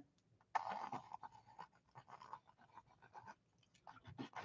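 Mechanical pencil sketching on paper: a run of faint, short, irregular strokes of lead on paper, starting about half a second in.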